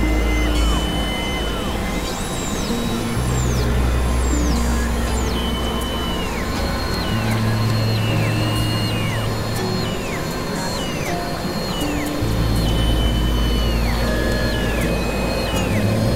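Experimental synthesizer drone music from a Novation Supernova II and a Korg microKORG XL. Sustained low bass tones change pitch every few seconds under repeated high tones that hold and then drop away in pitch, over a noisy hiss.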